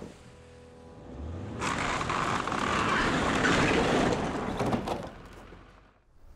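An old wooden shed with a sheet-metal roof being pulled down by a pickup truck: a low engine rumble, then from about a second and a half in a loud crash of cracking timber and the metal roof coming down, lasting about three seconds with a few last cracks before it dies away.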